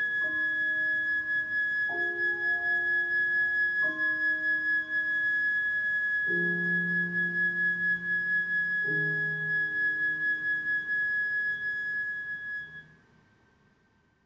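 Chamber ensemble music: a flute holds one long high note while clarinet, horn and piano change chords beneath it about every two seconds. The piece dies away near the end.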